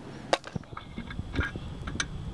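A few short, sharp clicks and taps of handling noise, the loudest about a third of a second in, over a low background.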